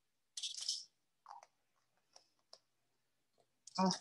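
Faint handling of a plastic squeeze bottle of dishwashing liquid and plastic measuring spoons: a short breathy rush about half a second in, then a few scattered light clicks.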